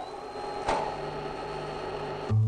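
Machine sound of power-station turbo-generators: a steady high whine over a low hum, with one sharp click about two-thirds of a second in.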